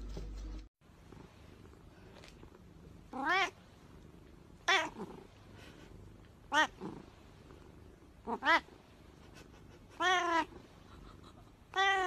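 Black-and-white long-haired cat meowing six times, short calls about every one and a half to two seconds, each rising then falling in pitch.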